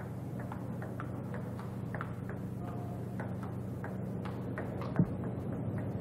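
Table tennis ball ticking on the table and paddles during a serve and short rally: a string of light, irregular ticks, with a sharper click about five seconds in. A steady low hum runs underneath.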